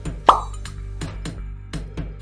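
A single quick, loud pop sound effect with a fast downward drop in pitch, about a quarter-second in, over background music with a steady beat.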